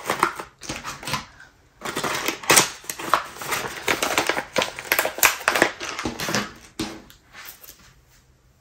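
Packaging pouch crinkling and rustling as hands fold and handle it, in a dense run of crackles that dies away near the end.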